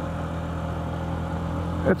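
Motorcycle engine running at a steady cruise at about 45 km/h, an even low hum picked up on the bike itself.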